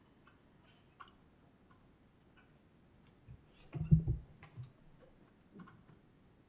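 Quiet room tone with a few faint ticking clicks, then a short cluster of dull, low knocks about four seconds in, the loudest sound here, and a softer knock near the end.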